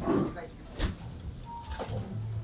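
A brief bit of voice at the start, then a couple of short, sharp clicks from a spoon as a spoonful of curry is lifted and tasted, over quiet room noise.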